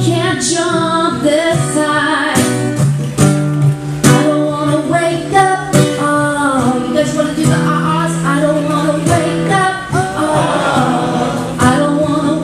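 A woman singing with a strummed acoustic guitar, a live song performance.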